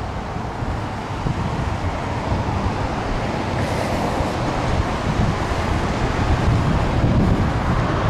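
Steady wind rumble buffeting the microphone, mixed with road traffic noise.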